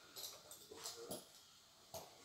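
A dog making a few short, faint vocal sounds while biting a helper's protection suit. Most come in the first second, with one more near the end.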